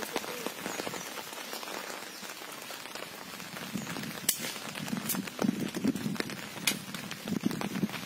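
Steady rain falling on pond water, with water splashing and sloshing from about halfway through as hands work in the shallows by a fishing net, and a few sharp taps.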